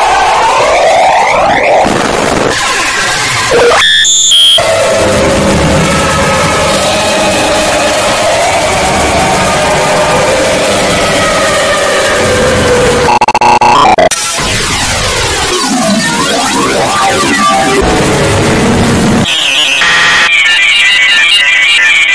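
Loud, distorted electronic noise and music: a chaotic mash of sweeping tones, held synth notes and harsh buzzing that switches abruptly a few times.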